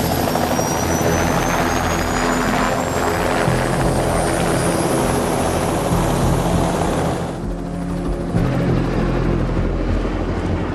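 Turbine helicopter running at full power as it lifts off and flies away, rotor and engine loud and steady, with a high whine rising in pitch over the first few seconds.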